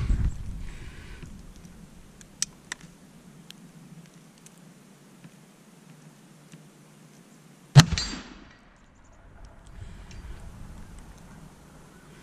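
A single shot from a CVA Wolf .50 calibre muzzleloader, loaded with 100 grains of Pyrodex behind a 245-grain PowerBelt bullet, about eight seconds in. It is very loud and sharp, followed by a short ringing tail as the bullet strikes the steel target at 50 yards. A few faint clicks come before it.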